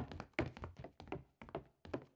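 Footsteps of several people walking away: an uneven string of quiet shoe taps on a hard floor, about three or four a second.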